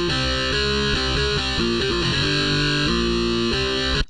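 FL Slayer, FL Studio's electric guitar emulator plugin, playing a short programmed riff of single distorted notes that climbs and then falls back. Every note is at maximum velocity, so despite the high dampening setting the notes ring out unmuted and sound the same as the plain, sterile preset. The playback cuts off abruptly at the end.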